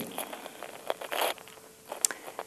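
Pen or stylus scratching in short handwriting strokes on a writing surface, with a light click just before a second in.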